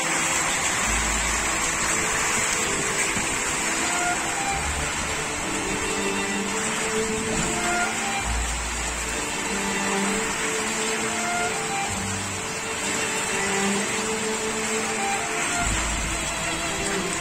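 A steady rush of storm noise, wind with rain, with low rumbling gusts hitting the microphone every few seconds. Faint string background music plays underneath.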